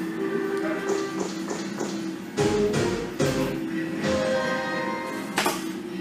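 A German coin-operated slot machine playing its electronic game music while the reels spin. A few short, sharp reel-stop sounds come around the middle and one more near the end.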